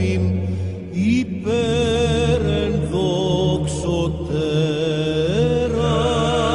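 Orthodox chant: a voice sings a slow, ornamented melody over a steady low drone, with a short break about a second in.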